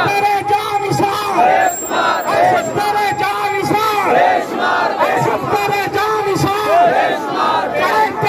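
A large crowd of men shouting slogans together in loud, repeated chanted calls, some of them held out long.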